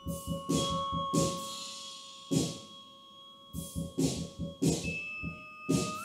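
Music: sharp percussion hits over held steady tones, with the held tones shifting to a new pitch near the end.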